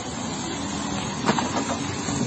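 A motor vehicle's engine running steadily, heard as a low even hum under outdoor background noise.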